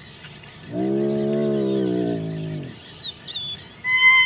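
Spotted hyena giving one low, drawn-out moaning call of about two seconds, steady in pitch and dropping off at the end. Faint high chirps follow, and a louder high-pitched call that falls in pitch begins right at the end.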